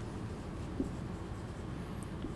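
Marker pen writing on a whiteboard: faint rubbing strokes over a steady low room hum.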